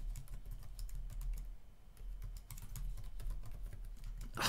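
Typing on a computer keyboard: a run of irregular key clicks, over a steady low hum.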